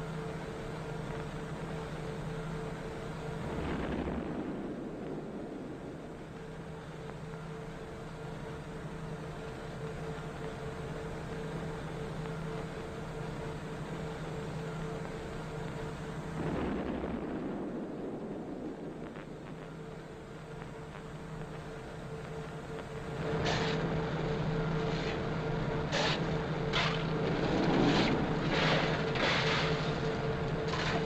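Depth charges exploding, heard as two low rumbles about four seconds in and again near seventeen seconds, over a steady hum. Near the end a run of sharp knocks and rattles sets in.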